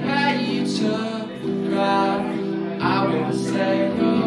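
Live solo performance: a male singer holds long sung notes in several phrases over sustained electric-sounding guitar chords.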